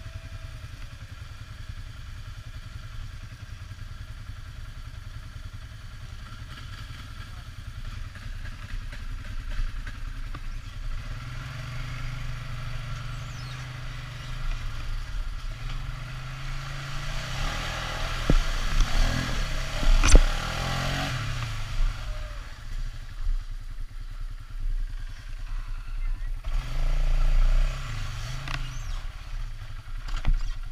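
ATV engine running at low speed, then pulling harder as the quad wades through a muddy water hole: water sloshing and splashing for several seconds, with one sharp knock about two-thirds of the way through as a wheel drops into a rut. The engine revs up again near the end.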